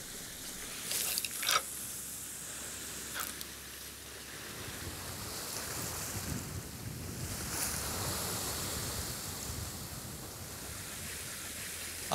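Sea surf washing against a rocky shore, with wind on the microphone; a few brief sharp noises about a second in and again near three seconds in.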